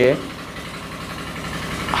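Tube-well pump engines running steadily nearby, a continuous low hum.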